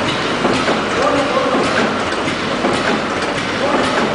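Automatic milk-powder pouch packing machine running: a steady loud mechanical clatter with many rapid clicks.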